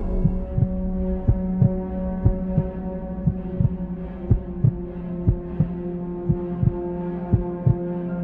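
Suspense film score: a sustained low drone under a heartbeat-like double thump that repeats about once a second.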